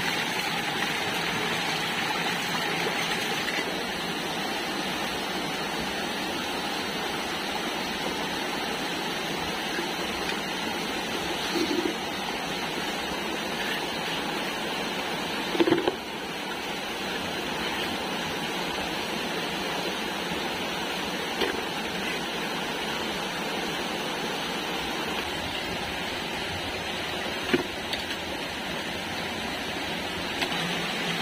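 Shallow stream water running steadily over rocks, with a few brief louder sounds from hands working in the muddy water, the loudest about halfway through.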